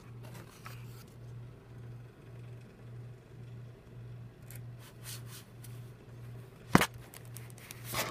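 Paper and cardstock being handled in a cardboard box: soft rustles, with a single sharp tap near the end that is the loudest sound. Beneath it, a low hum pulses about twice a second.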